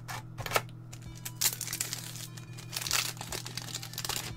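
Foil trading-card booster pack wrapper crinkling in several short bursts as it is handled and opened.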